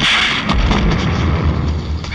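Heavy rain pouring down in a film's sound effects. A sharp hit lands at the very start, and a deep rumble sets in about half a second in and carries on.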